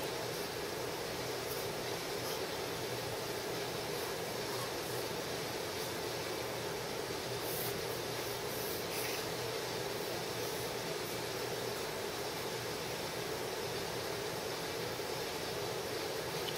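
Steady background hiss, with faint strokes of a felt-tip marker drawing on paper now and then.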